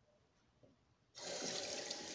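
Kitchen sink tap turned on about a second in, water then running steadily into the sink.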